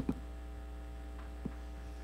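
Steady electrical mains hum, a low buzz with thin steady overtones, and a brief short sound at the very start.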